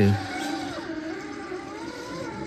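Redcat Gen 8 V2 RC crawler's drivetrain whining as it crawls over rough ground, the pitch falling about half a second in and then holding steady. It is the characteristic Redcat gear noise, which the owner puts down to parts made too tight.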